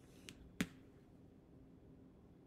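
Two short clicks from handling a dry-erase marker at a whiteboard, the second louder, a little over half a second in, in an otherwise quiet room.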